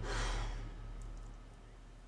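A soft sigh that fades into quiet room tone with a faint low hum.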